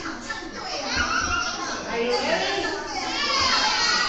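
A crowd of children's voices chattering and calling out over one another, louder near the end.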